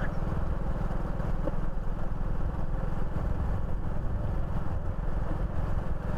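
Motorcycle engine running steadily at cruising speed, with a constant low rumble and road noise.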